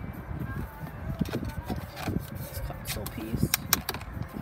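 A song with vocals playing quietly on the car's radio, with a few sharp clicks and taps in the second half, the loudest near the end, as a hand handles the plastic center console.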